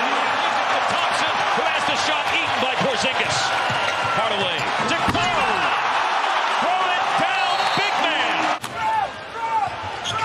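Basketball arena game sound: a steady crowd roar with sneakers squeaking on the hardwood and the ball bouncing during live play. The sound drops suddenly near the end, at a cut to another game.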